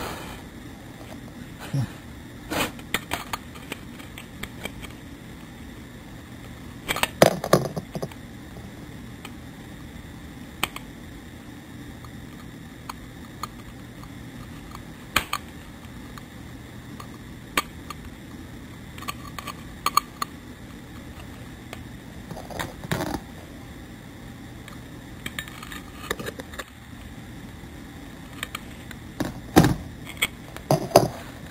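Scattered metallic clinks, clicks and knocks at irregular intervals from handling an e-bike motor controller's aluminium housing, its wires and hand tools, over a faint steady hum.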